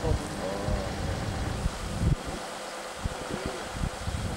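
Brief voices calling outdoors over a low, uneven rumble, with wind gusting on the microphone.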